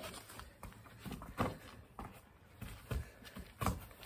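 A football being kicked and trapped on a grass lawn: several dull thuds, the loudest about a second and a half in and again near the end, with footsteps on the grass in between.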